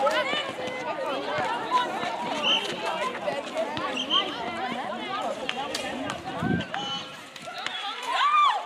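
Several netball players' voices calling and shouting over one another during play, with scattered footfalls on the court.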